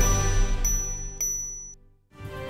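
The tail of a TV show's theme jingle: the music fades while a high, bright chime rings, struck again twice, then everything cuts off suddenly into a moment of silence.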